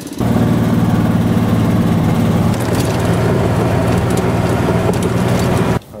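An engine running steadily at an even pitch. It cuts in abruptly just after the start and stops suddenly shortly before the end.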